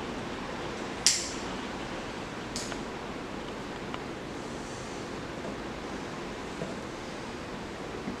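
Marker pen scratching on a plastic bucket as a circle is traced around a seal ring: a sharp short scratch about a second in and a fainter one at about two and a half seconds, over a steady room hiss.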